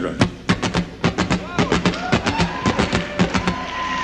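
Acoustic guitar with a strip of paper woven through its strings, strummed in a quick rhythm of about four to five strokes a second. Each stroke gives a dry, papery click like a snare drum over muted bass notes.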